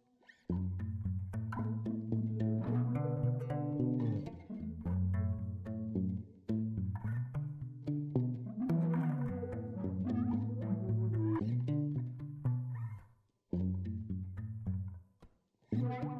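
Instrumental background music with a plucked low bass line, the notes changing in steps and breaking off briefly a few times.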